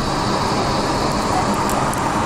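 Steady jet engine and airflow noise heard inside the cabin of an Airbus A380 as it lines up on the runway for takeoff, an even rush at a constant level.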